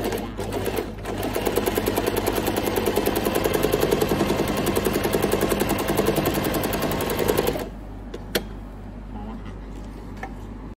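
Janome 393 sewing machine running at speed while stitching a rolled hem through a hemmer foot, with a fast, even rhythm of needle strokes. It starts about a second in and stops abruptly with about two seconds to go, followed by a single click.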